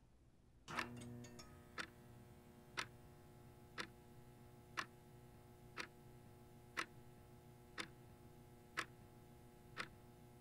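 Analog wall clock ticking once a second, sharp even clicks over a faint steady hum.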